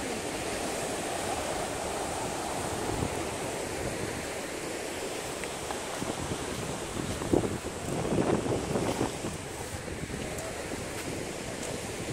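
Ocean surf washing against the rocks below a seawall, mixed with wind on the microphone, as a steady rushing noise; a louder surge of noise comes a little past the middle.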